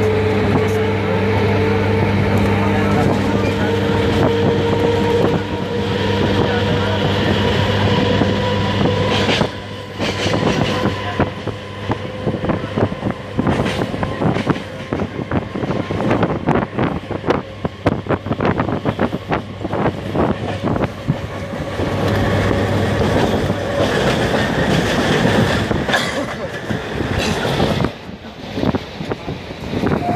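Electric suburban train heard from inside the carriage: a steady hum with a slowly rising whine as it gathers speed, then about ten seconds of rapid, uneven clatter of the wheels over rail joints.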